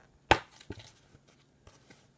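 Plastic DVD keep case snapping open: one sharp click, followed by a softer click and a few faint ticks.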